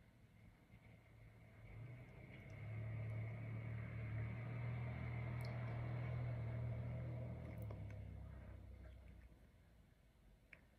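Faint low engine hum that builds over the first few seconds, holds, then fades away near the end, as of an engine passing by.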